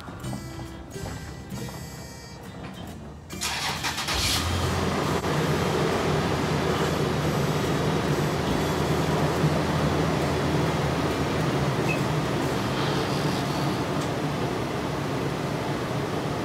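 Garage door opener raising a sectional garage door: a loud, steady running noise that starts suddenly about three seconds in and carries on throughout.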